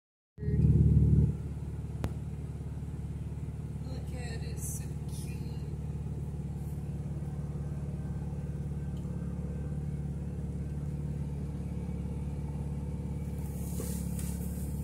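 Steady low rumble of a long freight train of tank cars and covered hoppers rolling past a level crossing, heard from inside a stopped car. A louder burst comes in the first second and a single click about two seconds in.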